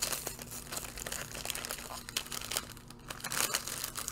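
Ice-pop wrapper crinkling and rustling as it is handled and pulled open: a continuous run of small irregular crackles, busier near the end.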